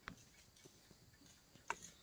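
Near silence, broken by two faint short clicks: one at the very start and one near the end.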